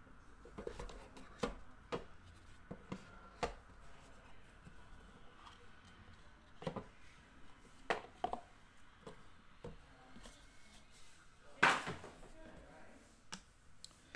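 Cardboard trading-card boxes being handled and slid open: scattered light taps and clicks, with one louder scrape near the end.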